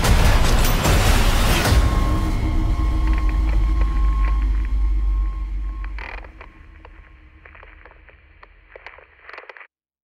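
Cinematic trailer sound effects. A loud blast dies away over about two seconds above a deep rumble that fades out about six seconds in. Then comes a sharp hit and a run of faint metallic creaks and clicks over a held tone, which cuts off suddenly near the end.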